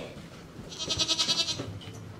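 An Angora goat bleating once as it is grabbed and held: a single wavering, quickly pulsing high call lasting about a second, near the middle.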